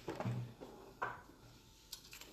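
Quiet handling noise: a few soft knocks and a faint click as a person shifts in a chair and reaches for a rifle.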